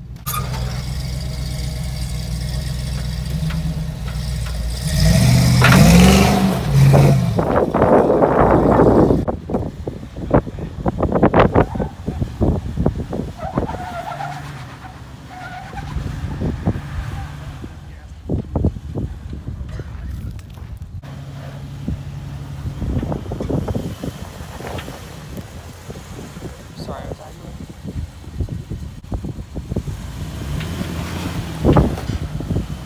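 Jeep Wrangler engine running at low revs as it crawls, revving up about five seconds in. After that comes a loud, rough stretch, then a run of sharp knocks and crunches, with the engine idling again at times later on.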